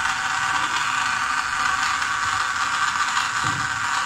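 Small DC gear motor driving a homemade conveyor belt, running steadily.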